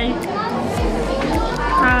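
Children's voices and chatter over background music with a steady beat, about two beats a second.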